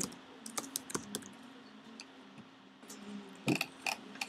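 Typing on a computer keyboard: a quick run of keystrokes in the first second or so, a pause, then a few more key clicks near the end.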